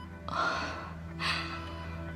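A woman takes two audible breaths, gasps, about a third of a second in and again just after one second, over soft background music with sustained notes.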